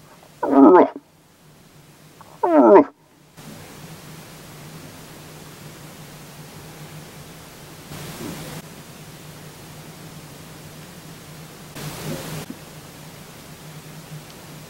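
Two loud, short, wavering moose-style calls in the first three seconds. Then, over a steady low hum, a distant bull moose grunts faintly twice, about eight and about twelve seconds in.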